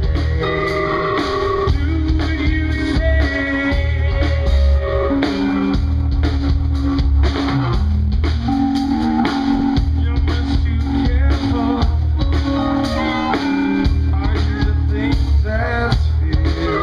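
A live rock band playing: electric guitar, drum kit and keyboard, with held notes over a strong bass pulse.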